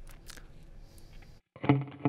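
Boss GT-1000CORE multi-effects output: faint hiss with a few light clicks, cutting out briefly as the patch changes. About a second and a half in, electric guitar notes start, played through the 'Deluxe Crunch' preset.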